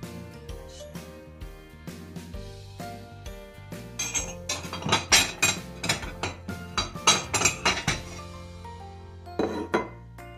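Dishes clinking on a kitchen counter, a plate among them, over background music: a rapid run of sharp clinks in the middle, then a short burst near the end.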